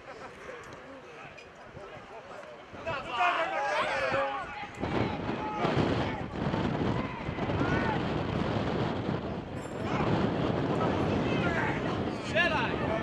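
Football match sound from the pitch: players shouting on the field about three seconds in, then a loud steady rushing noise with voices calling through it.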